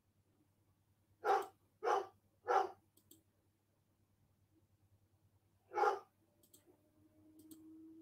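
A dog barking indoors: three quick barks, then a single bark a few seconds later.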